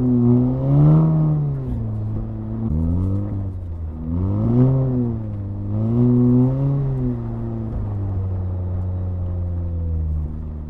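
2018 VW Golf R's turbocharged four-cylinder, with a cold air intake and resonator-deleted exhaust, heard from inside the cabin. Its revs rise and fall about three times as the throttle is worked while the car slides on the ice, then settle to a steadier, lower pitch near the end.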